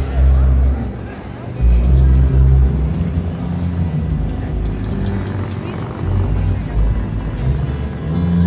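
Loud amplified music from a stage PA during a sound check, dominated by deep bass notes that change pitch every second or so, with fainter higher parts above them.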